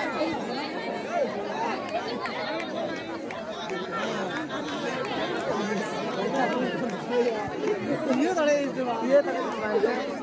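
Crowd chatter: many voices talking over one another at once, none standing out as a single speaker, with a few louder shouts near the end.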